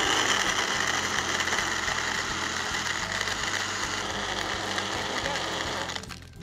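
Countertop blender running, blending milk, shake powder and ice into a thick shake. It is a steady whir that eases slightly as the ice is crushed, and it stops at the very end.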